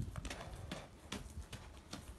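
Hooves of a yearling Arabian filly striking loose gravel as she moves on the lunge line: a handful of uneven, crisp strikes.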